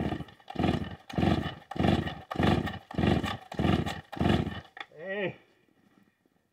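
Vintage Stihl 045 AV two-stroke chainsaw being pull-started: seven quick pulls of the starter cord crank the engine in a run of rasping strokes, and it does not keep running. A short rising-and-falling voice sound follows near the end.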